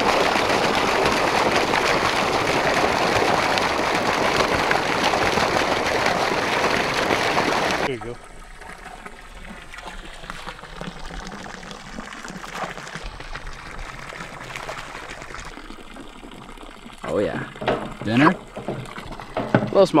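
Water gushing from a stocking truck's discharge pipe and splashing into a pond. It cuts off abruptly about eight seconds in, leaving a much quieter background.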